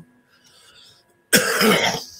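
A person coughs once, a short hard cough about a second in, after a quiet pause.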